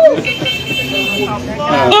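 A person's voice: a short rising-falling exclamation or laugh at the start, then low speech with a steady high-pitched tone behind it for about a second.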